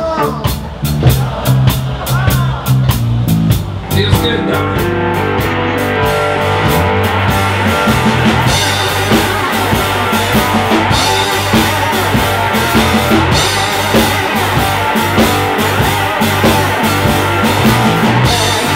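Live blues-rock band: a box-bodied electric guitar with a male singing voice, bass guitar and drum kit. The first few seconds are sparser, and the full band with a steady drum beat comes in about four seconds in.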